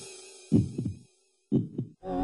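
Homemade electronic music in a sparse break: a fading held chord, then two low double thumps about a second apart, before the full music comes back in.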